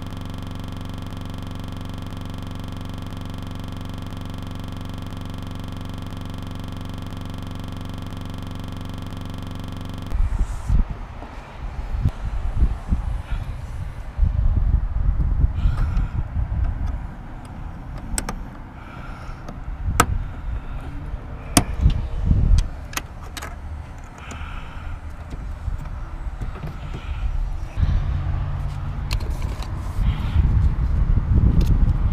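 A steady, unchanging hum for about the first ten seconds, which then cuts off abruptly. After it come irregular sharp plastic clicks, knocks and low rumbling as a car's interior door panel, its trim pieces and its wiring connectors are handled and fitted back together.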